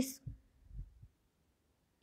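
The tail of a woman's spoken word, then a few faint low thumps within the first second, then silence.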